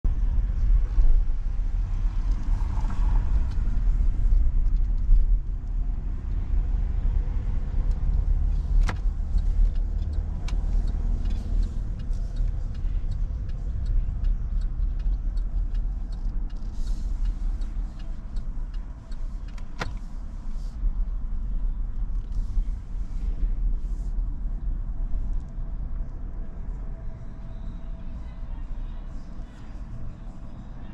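Car driving slowly, heard from inside the cabin: a steady low rumble of engine and tyres that grows quieter toward the end as the car slows to a stop. Two sharp clicks come partway through.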